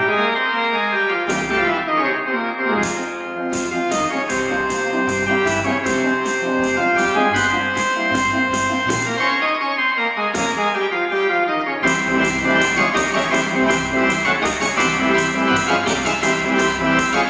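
Artisan electronic theatre organ playing sustained full chords, with a steady light percussion beat. The beat drops out for about a second near the start and again about ten seconds in.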